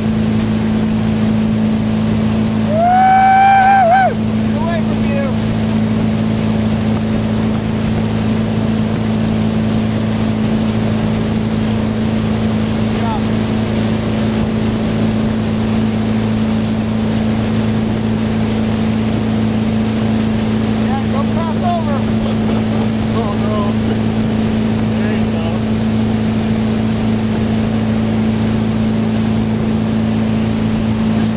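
Ski boat engine running steadily at speed, with a constant hiss of spray and wind. About three seconds in comes a loud, high yell lasting about a second.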